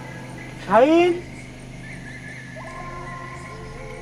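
A man's short startled cry, rising sharply in pitch, about a second in, over background music's held tones; a new held note comes in about halfway through.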